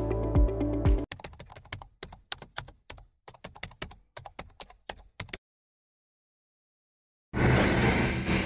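Background music with a steady beat stops about a second in. Rapid, irregular keyboard typing clicks follow for about four seconds, as typed-text sound effects. Near the end comes a short burst of noise lasting about a second.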